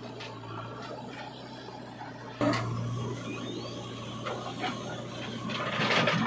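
JCB 3DX backhoe loader's diesel engine running steadily under hydraulic load. About two and a half seconds in it abruptly becomes louder, with knocks and rattles. Near the end soil pours from the bucket into a tractor trolley.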